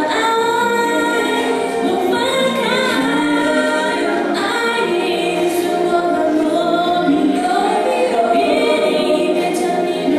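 Two women singing a Mandarin pop duet into handheld microphones over a karaoke backing track.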